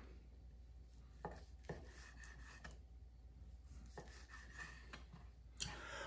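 Faint knife work: a knife shaving the fat cap off a raw beef strip steak on a wooden cutting board, heard as a few brief soft scrapes and knocks over near-quiet room tone.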